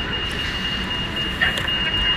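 Outdoor urban plaza ambience: a steady low rumble of city noise, with a thin, steady high-pitched tone running through it.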